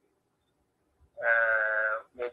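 Near silence for about a second, then a man's voice holding one steady, level-pitched vowel, like a drawn-out 'ehh', for most of a second.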